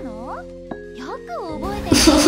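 Anime soundtrack: a young girl's voice speaking Japanese in high, sweeping tones over soft background music with held notes. Near the end a louder, fuller sound swells in.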